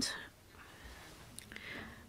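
A pause between spoken phrases: faint room tone through a conference microphone, with a small click about halfway through and a soft breath shortly before speech resumes.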